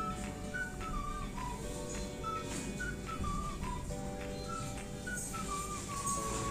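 Background music: a high, whistle-like melody of short sliding phrases over steady held chords.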